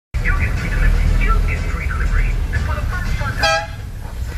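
Low rumble of vehicle engines and road noise in slow city traffic, with a single short car horn toot about three and a half seconds in.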